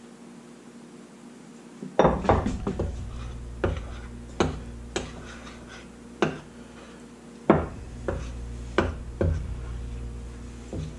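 Metal spoon clinking and scraping against a ceramic bowl as confectioner's sugar is stirred into melted butter for a glaze. The irregular sharp clinks begin about two seconds in and keep coming every half second or so.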